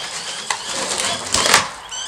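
A cardboard product box being handled and lifted upright, a rough scraping rustle with a sharper, louder scrape about one and a half seconds in.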